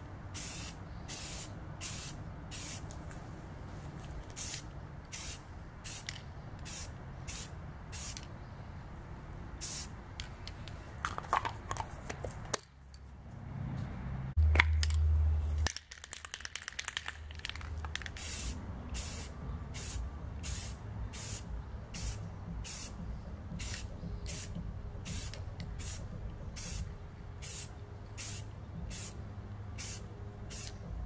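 Aerosol can of Krylon red oxide spray primer being sprayed in short hissing bursts, about two a second. A little past halfway the spraying breaks off for a few seconds, with a brief loud low rumble, before the bursts start again.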